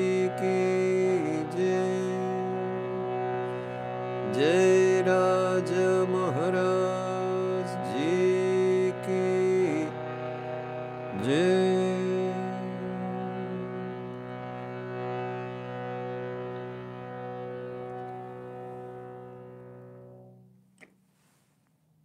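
A man singing a devotional song over a harmonium's held chords. The voice stops about halfway through, and the harmonium's chord fades away over several seconds, followed by one soft click near the end.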